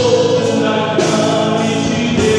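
A gospel hymn sung by a man into a microphone, with musical accompaniment, sustained and unbroken.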